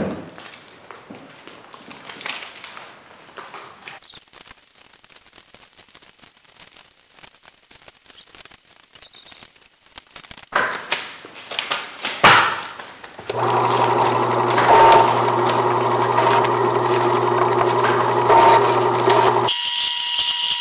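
Quiet rustling and handling of paper envelopes, then an electric letter opener runs for about six seconds: a steady, loud motor drone with a cutting, rasping edge as envelopes are fed through and slit, stopping suddenly just before the end.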